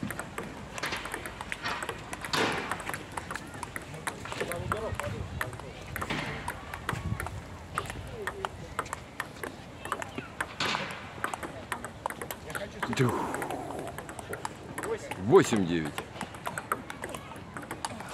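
Table tennis ball clicking off paddles and the table in quick, irregular taps during rallies, with voices talking in the background and a short loud vocal outburst about three-quarters of the way through.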